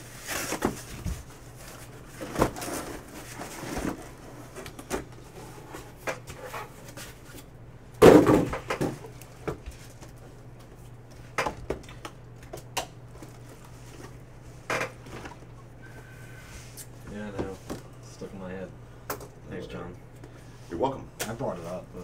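Cardboard case and shrink-wrapped card boxes being handled: scattered knocks, scrapes and taps as the boxes are lifted out and set down, with one loud thump about eight seconds in. A steady low hum runs underneath.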